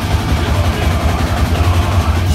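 Live metal band playing at full volume: distorted guitars and bass over rapid drumming, recorded on a phone in the audience.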